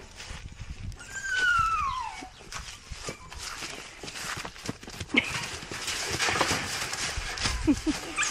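Shuffling footsteps and hooves in dry leaves while a cow is held on a halter. About a second in there is a single high call that slides down in pitch.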